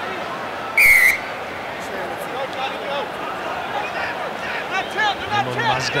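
Referee's whistle blown once, a short trilling blast about a second in, over the steady murmur of a stadium crowd; it signals a penalty at the tackle.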